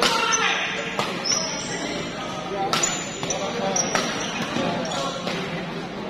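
Badminton doubles rally: rackets striking the shuttlecock in sharp cracks about every second, with short high squeaks of court shoes between shots. Crowd chatter fills the large hall underneath.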